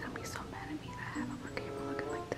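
Whispered speech over soft background music with held notes.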